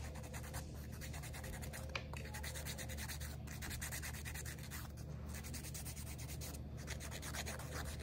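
Emery board filing a fingernail: a faint, steady rasping of quick back-and-forth strokes, shortening the natural nail.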